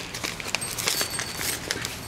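Light rustling with a scatter of small, sharp clicks as a paper seed packet is handled and opened by hand.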